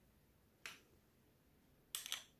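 Near silence broken by one short, sharp click about two-thirds of a second in, from a metal spoon touching a jar of frozen fruit gelato.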